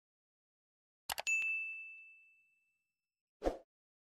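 Sound effects for an animated subscribe button: a quick double mouse click about a second in, then a single bright notification-bell ding that rings out and fades over about a second and a half. A short soft thump follows near the end.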